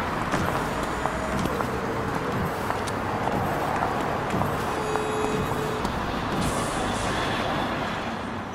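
Busy city street ambience: a steady bed of traffic-like noise with scattered small clicks and clanks.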